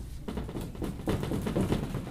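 Dry-erase marker drawing on a whiteboard: a quick, irregular run of short strokes and taps.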